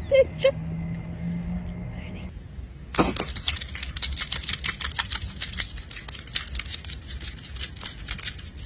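A low steady hum for the first two seconds. Then, after a short pause, a pet hedgehog chewing crunchy food: rapid, irregular crunching clicks.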